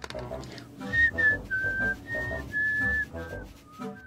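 A person whistling a short tune of about six held notes, starting about a second in, over quieter background music.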